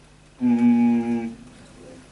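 A man humming a single steady note for about a second, a drawn-out hesitation "mmm" at the microphone.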